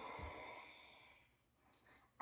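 A woman's long, audible breath out, a soft sigh, fading away about a second and a half in.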